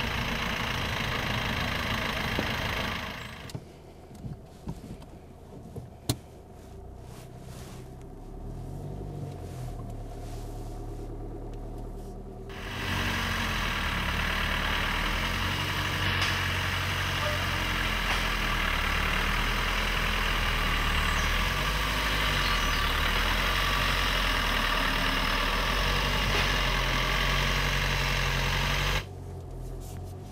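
Vauxhall Corsa hatchback's engine running at low revs as the car moves slowly, its note wavering a little. Partway through, the sound drops for several seconds, then comes back louder with a steady hiss over the engine.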